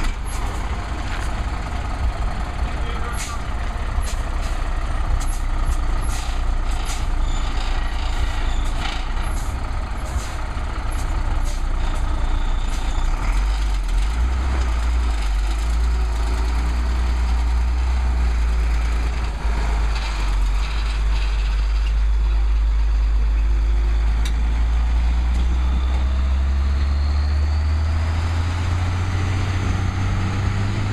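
International DT466 diesel engine of a medium-duty box truck running low, then working much harder from about halfway through as the truck pulls away uphill. Its note rises over the last few seconds as it gathers speed. A scatter of sharp clicks sounds in the first dozen seconds.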